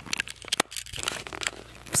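Paper rustling and crinkling as a scrapbook and loose paper clippings are handled: a run of irregular short crackles.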